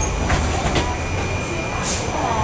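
Steady low rumble of a Muni transit vehicle heard from inside while it is moving, with a few short rattles or knocks, the sharpest near the end.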